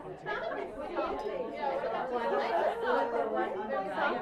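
Many voices talking over one another: audience members chatting in pairs at the same time.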